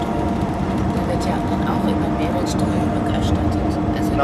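Indistinct voices over a steady hum that holds two constant tones.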